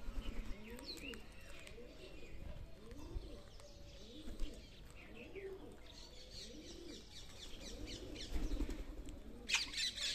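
Birds calling: a low cooing call repeated about once a second, with scattered high chirps and a short, loud squawk near the end.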